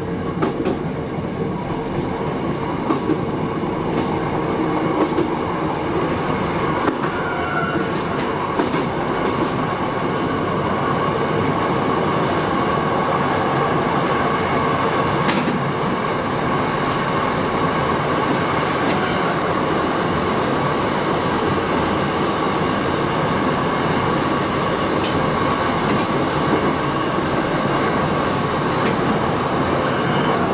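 Shin-Keisei 8000 series electric train running along the line, heard from the driver's cab. Steady rail running noise with a constant whine, growing a little louder over the first ten seconds, and a few sharp clacks of the wheels over rail joints.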